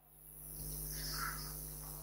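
Faint steady electrical hum with hiss from the microphone and sound system, with no speech.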